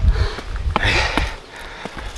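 A person's short, breathy sniff of breath close to the microphone about a second in, over a low rumble on the microphone and a few light clicks.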